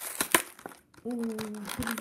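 Clear plastic blister and cardboard backing of a stapled toy-car package crinkling and crackling as it is pried open by hand, with a few sharp clicks in the first second.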